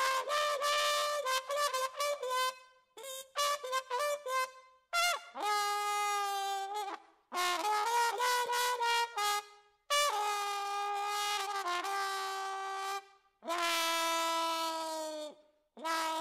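A lone brass instrument plays unaccompanied: quick runs of short notes, then long held notes that scoop up into pitch, with short pauses between phrases.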